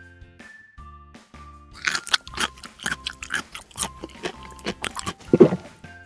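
Crunchy chewing sound of crispy fries being eaten: a quick run of crunches that begins about two seconds in and lasts almost to the end, over light background music.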